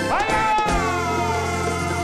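Live vallenato band's closing held chord. A high pitched note swoops up sharply at the start and then slides slowly down. Under a second in, a low bass note comes in and holds steady under it.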